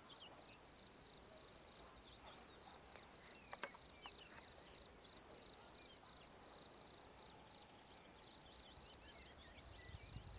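Faint outdoor ambience: insects giving a steady high-pitched buzz, with faint short chirps and a single sharp click about three and a half seconds in.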